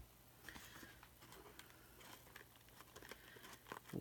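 Near silence: faint rustles and light taps of a sheet of glitter cardstock being handled, over a faint low steady hum.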